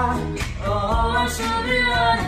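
Music: a girl and a young man singing "la la la" together in a duet.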